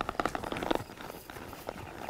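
A horse walking and turning on dirt, its hooves making a series of soft, irregular steps.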